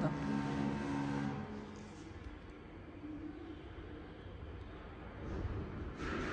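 Hydraulic pump of an LK270 electric mini dumper running with a steady hum as its three-stage chrome cylinder extends to tip the bed. The hum stops about a second and a half in, leaving a quieter low rumble that grows again near the end.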